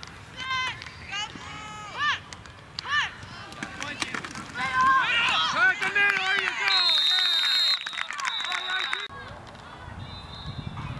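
Sideline spectators shouting and cheering during a football play. About seven seconds in a referee's whistle blows a long blast, then a second, shorter blast, signalling the play dead after the tackle.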